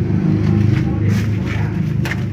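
Truck engine idling close by, a steady low rumble with an even pulsing beat.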